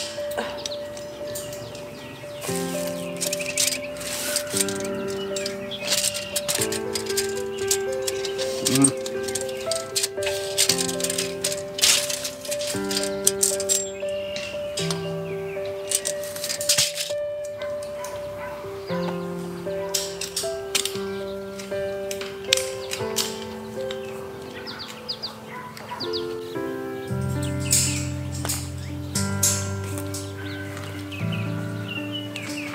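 Background music: an instrumental of held chords that change every second or two, with light percussive clicks, and a deeper bass part coming in near the end.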